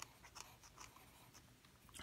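Faint scratching of a pencil writing on a paper worksheet.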